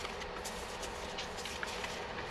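Board-game cards being leafed through by hand: light paper rustling with scattered soft clicks of card stock.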